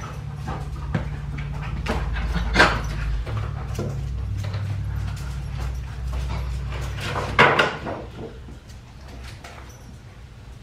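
A pet dog making excited noises close by, over a low steady rumble that fades about eight seconds in, with two louder sharp sounds about two and a half and seven and a half seconds in.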